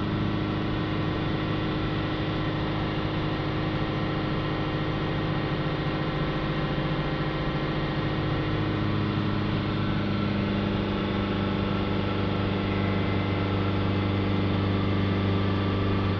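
Ford Transit Connect's 1.5-litre four-cylinder diesel engine held at a steady 3000 rpm, a constant drone heard from inside the cab. The engine is being run up to burn through DPF cleaning fluid just injected into the blocked diesel particulate filter while its back-pressure falls.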